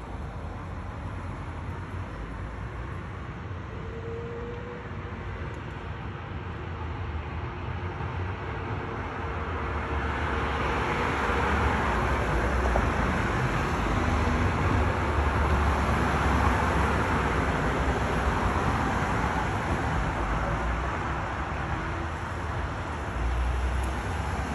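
Street traffic below: a vehicle passes, its road noise swelling to a peak in the middle and easing toward the end over a steady low rumble.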